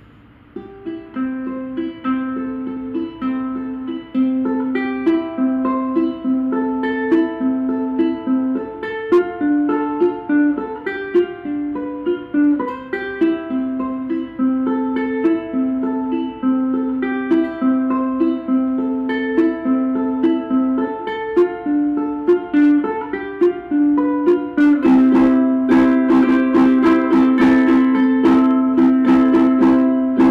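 Vangoa ukulele with a laminate mahogany body and Aquila strings, played solo: a fingerpicked melody of single plucked notes over a repeated low note. Near the end it changes to louder strummed chords.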